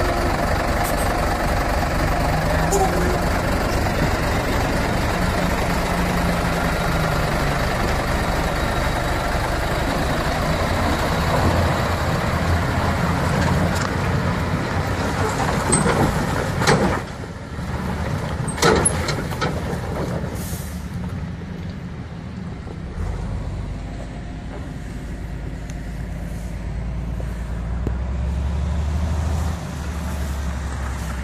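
Heavy four-wheel-drive military truck's diesel engine running under load as it crawls through muddy off-road ruts, with a few sharp noises around halfway. After that the engine sound drops to a quieter low rumble.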